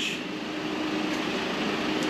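Steady background noise with a faint, even hum and no distinct events.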